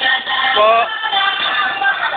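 Music with a singing voice.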